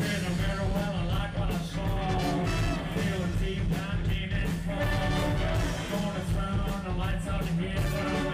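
A live rock band playing loud through the club PA: electric guitar, bass and drums keeping a steady beat, with a voice singing over them.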